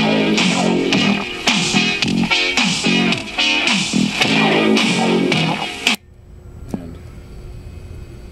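Guitar music played back from a cassette in a Sony Walkman through small speakers, as a test that the tape player works. It stops abruptly about six seconds in, followed by a single sharp click.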